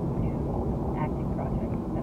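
Steady road and engine rumble inside a moving car's cabin, with a woman's voice faintly over it.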